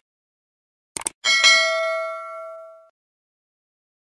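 Sound effect of a subscribe-button animation: a quick double click about a second in, then a bell ding that rings out and fades over about a second and a half.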